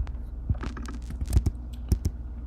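Computer keyboard typing: a run of irregular keystroke clicks as a terminal command is entered.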